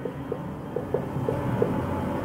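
Steady low room hum, with faint short squeaks of a marker pen writing on a whiteboard.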